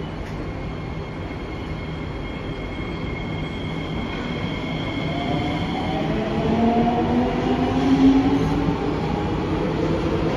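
SMRT C151B electric metro train pulling away from the station, its traction motors whining in several rising tones as it picks up speed. It grows louder from about halfway through as the carriages pass close by.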